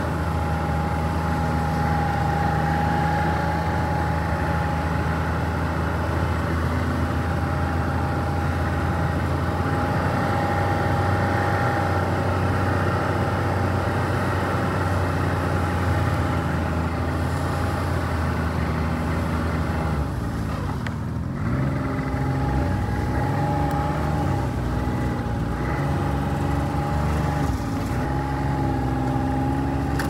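Snowmobile engine running at a steady cruise with a constant high whine from the drive as it rides along a packed trail. About two-thirds of the way in, the throttle eases off and the engine note drops, then rises and falls unevenly.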